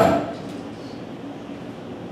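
Laughter and voices fade out right at the start, leaving a lull of quiet room noise in a small theatre with faint, indistinct murmuring.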